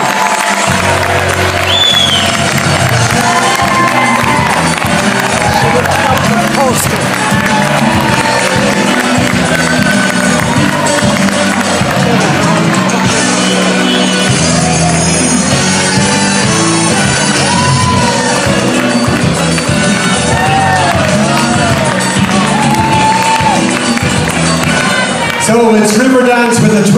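Loud walk-on music playing through a hall's sound system while an audience cheers, whoops and claps.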